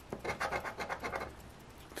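A scratch-off lottery ticket's coating scraped off with a coin-shaped scratcher in a quick run of short strokes, stopping about a second and a half in.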